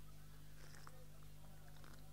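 Faint, low, steady electrical hum from the recording's sound system, with a few faint scattered noises from the gathering.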